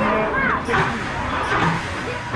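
People's voices talking and calling out around a roller coaster station, with one high gliding call about half a second in, over a low rumble as the coaster train rolls forward.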